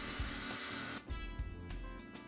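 A milling machine running as a D-bit cuts a groove in aluminium plate, a steady hiss, for about a second; then background music comes in and carries on.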